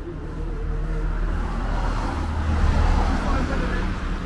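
A car passing on the street: tyre noise and a low engine rumble swell to a peak about two and a half seconds in, then ease off.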